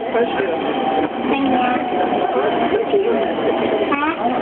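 Inside a JR E231-series commuter train running into a station, with a steady whine over the running noise and people's voices chattering.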